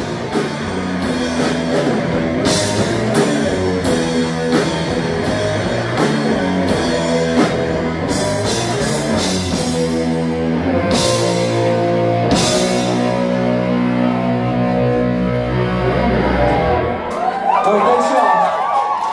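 Live rock band of electric guitars and drum kit playing to a steady beat, then two cymbal crashes and a long held final chord that stops about a second before the end, followed by crowd voices.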